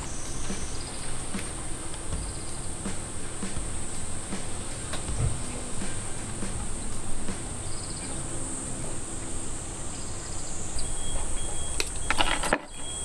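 A steady, high-pitched drone of summer insects, with faint scattered clicks and rustles from branches and wire being handled.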